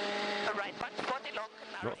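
Ford Fiesta RS WRC rally car's turbocharged four-cylinder engine at speed on gravel, heard from inside the cabin: a steady high engine note for the first half second or so, then the revs waver, with a few sharp clicks.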